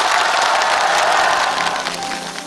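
Studio audience applauding after a song ends. The clapping is dense and steady, then dies away near the end.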